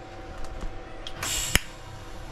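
TIG welder striking its arc on a steel motor housing: a short high-frequency start hiss about a second in, ending in a sharp click as the arc lights.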